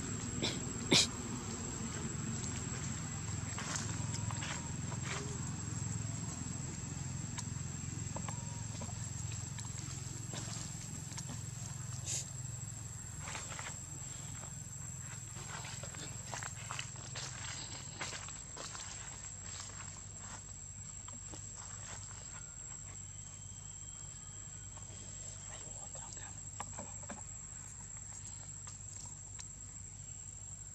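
Outdoor ambience: a steady high-pitched insect drone over a low rumble, with scattered light clicks and rustles. A sharp click about a second in is the loudest sound.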